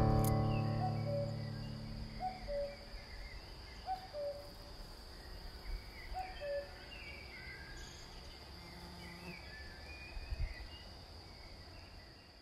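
Faint outdoor birdsong as the last chord of the band fades out. One bird repeats a two-note falling call about every one and a half seconds, other birds give higher chirps, and a steady high insect-like trill runs underneath.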